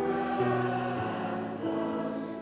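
A choir singing a slow hymn in long held notes.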